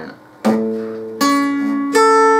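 Acoustic guitar with plucked notes: after a brief pause, three picked notes or chords about three quarters of a second apart, each left ringing.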